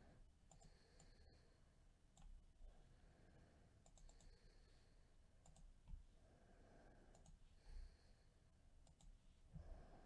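Near silence with faint, scattered clicks from a computer mouse in use, and a few soft thumps.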